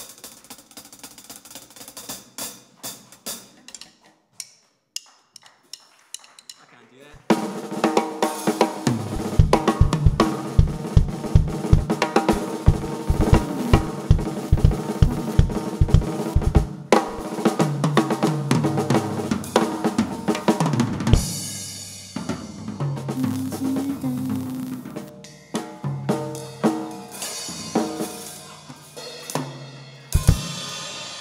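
Several acoustic drum kits played live together: scattered cymbal and snare hits for about the first seven seconds, then the kits come in loud with an even bass-drum pulse of about two beats a second. In the second half, pitched tom-tom fills and snare rolls take over.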